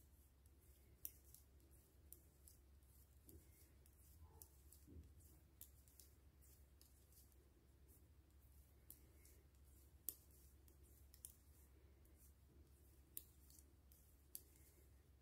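Near silence with faint, sparse clicks of metal knitting needles as stitches are worked, a few of them slightly sharper than the rest.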